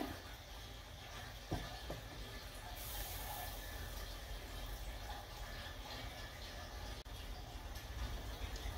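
Faint watery noise from a pot of water and pork bones heating on a gas stove, with one soft knock about a second and a half in.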